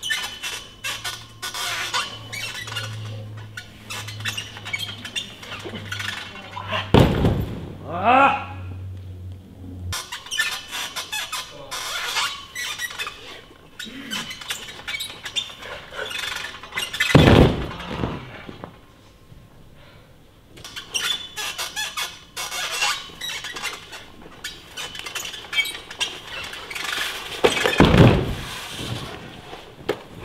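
High bar release attempts in a gym: three loud thumps about ten seconds apart as the gymnast comes off the bar after each Cassina attempt, with a short cry after the first. Voices and general gym noise fill the gaps.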